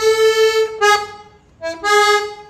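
Accordion playing a short phrase of held notes, breaking off briefly just past the middle and coming in again near the end.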